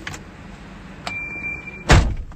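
Vehicle's door-ajar warning: one steady high beep a little under a second long, signalling a door not fully shut. A loud thump near the end.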